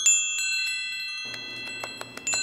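Chimes ringing: a cluster of high, bell-like tones that starts sharply, with more tones struck one after another, each ringing on.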